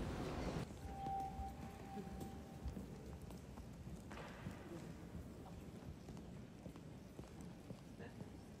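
Faint footsteps and shuffling of many people walking on a hard sports-hall floor, with a brief faint steady tone about a second in.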